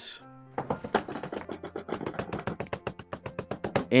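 A drum roll: rapid knocking strikes, about ten a second, running for about three seconds over quiet background music.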